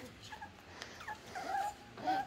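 Cavoodle puppies whining: a few short, faint whimpers, the longest one wavering in pitch near the end.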